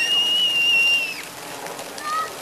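A child's high-pitched squeal held on one steady pitch for a little over a second. It slides up at the start and drops away at the end.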